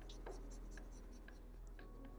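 Faint scratching of a felt-tip marker on paper, a few short strokes as a curved line is inked and thickened.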